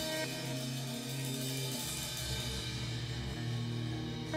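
Electric guitar and drum kit playing live together in an instrumental passage, with held guitar notes over drums and cymbals.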